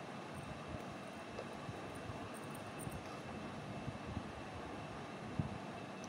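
Steady low-level background noise with a faint thin high tone running through it.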